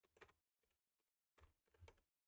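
Faint computer keyboard typing: a few quick keystrokes near the start and another short run near the end, as a shell command is typed.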